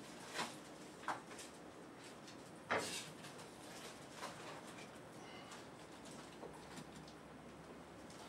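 Faint kitchen utensil sounds: a metal spoon scraping and tapping as stuffing is scooped from a metal bowl and packed into mushroom caps. There are a few short scrapes and clicks, the loudest a brief squeaky scrape about three seconds in.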